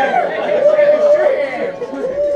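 Speech only: a voice talking in a crowded room with chatter around it, one sound drawn out in a long held tone.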